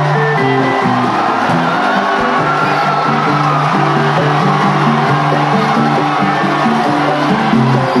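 Congolese rumba band playing live, with a stepping bass line under guitar and other melody lines.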